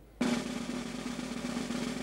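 Snare drum roll in the soundtrack music, starting suddenly and held steady, a suspense roll.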